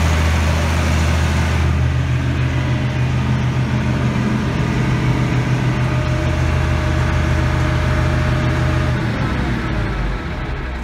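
Massey Ferguson 1105 tractor's six-cylinder Perkins diesel idling with a steady low drone. The top end of the sound drops away a couple of seconds in, and the engine note shifts near the end.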